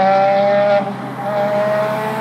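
Ferrari engine accelerating hard away down the road, its pitch climbing through a gear. It drops at an upshift about a second in, then climbs again.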